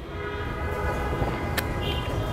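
Steady low rumble with a hum of several held tones above it, slowly getting louder.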